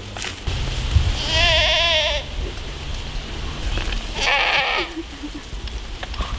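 A goat bleating twice, each call about a second long with a quavering pitch.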